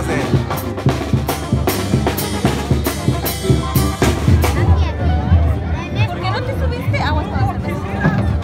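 Mexican banda brass band music: tubas and trumpets over a steady drumbeat, with a voice over it.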